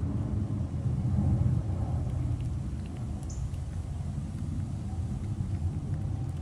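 Steady low background rumble, with a few faint clicks and one brief high chirp-like tone about three seconds in.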